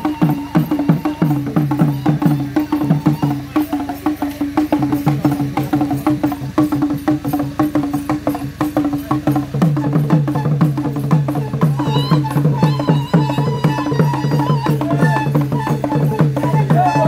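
Acholi bwola dance drums: many small hand-held drums beaten by the dancers in a fast, steady, interlocking rhythm, with a low drum tone and a higher one sounding together.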